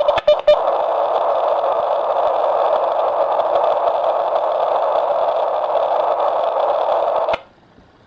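Encrypted dPMR digital radio transmission from a Kirisun S780 handheld, heard over a receiver as a steady, harsh data buzz. It opens with a few short beeps and clicks as the call is keyed, and cuts off abruptly about seven seconds in when the transmission ends.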